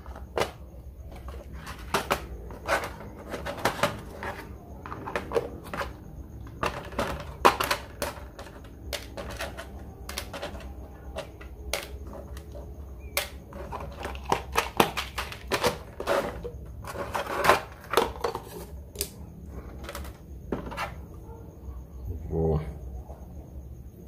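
Small parts being handled on a workbench: irregular clicks and rattles of LEDs and small metal hardware in clear plastic tubs, with the tubs and lid knocked and set down.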